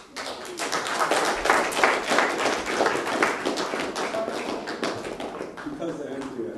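Audience applause: many people clapping, starting suddenly and easing off slightly toward the end.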